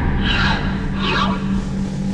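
Two short whoosh sound effects, under a second apart, over a held low note in the background music.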